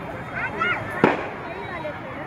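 One sharp firecracker bang about a second in, over the chatter of a large crowd, with a raised voice just before the bang.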